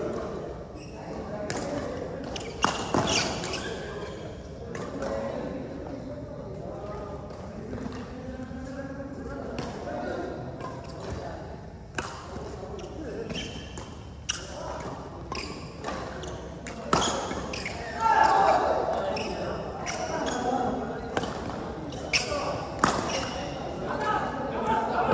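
Badminton rackets striking a shuttlecock in a doubles rally: sharp hits at irregular intervals, with voices in the background in a large, echoing sports hall.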